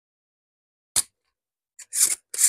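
Near silence, then a sharp click about a second in, followed near the end by short bursts of hiss as an electric desoldering gun sucks molten solder from a diode's pin on a circuit board.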